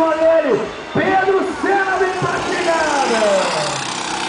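A man's voice talking fast over a kart engine, whose pitch falls steadily near the end.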